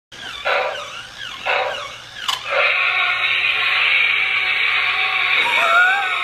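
Battery-powered toy smoke-spray dinosaur making electronic roar sounds, two short roars about half a second and a second and a half in, then a sharp click. After that comes a steady hissing sound with faint tones as it starts spraying mist.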